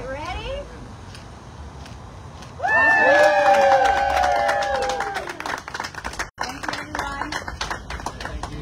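A small group cheering and applauding: about two and a half seconds in, several voices break into a long shared cheer that slowly falls in pitch over a couple of seconds. Quick hand clapping starts with the cheer and goes on, thinning out, after the voices fade.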